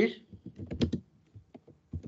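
Typing on a computer keyboard: an uneven run of key clicks.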